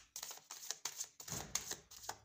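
A deck of tarot cards being shuffled and handled by hand: a quick, uneven run of soft card clicks and rustles.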